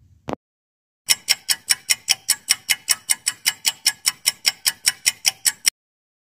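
Countdown-timer sound effect of a clock ticking fast, about five ticks a second for some four and a half seconds, then stopping suddenly. A single short click comes just before the ticking starts.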